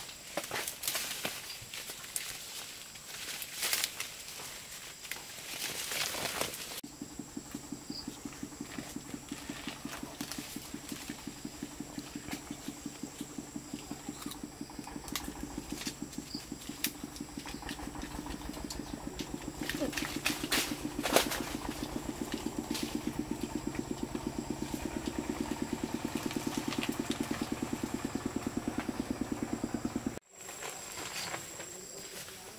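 Leaves and branches rustling and crackling as rose apples are pulled from the tree by hand. About seven seconds in, this gives way to a steady, rapid rhythmic pulsing over a low hum that continues throughout.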